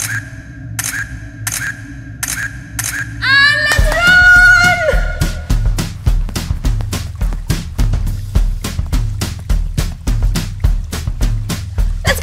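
Camera shutter click sound effects, about five evenly spaced clicks over a low music drone. Then a loud cry that rises and is held for about a second and a half, followed by fast music with a quick drum beat.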